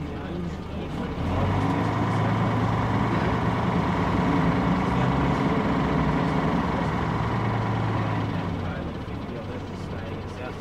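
Engine of an MK II bus running as the bus moves slowly in traffic close by: a steady engine hum that grows louder about a second in and eases off near the end.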